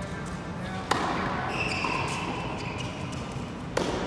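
Two sharp pops of a tennis ball struck by a racket, about three seconds apart, during a practice rally on a hard court.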